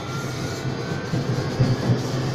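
Tram running on its rails, heard from inside: a steady low rumble with a faint rising whine from the drive.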